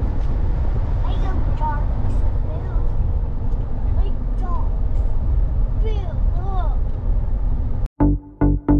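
Steady low road and engine rumble heard inside a moving SUV's cabin. It cuts off suddenly near the end.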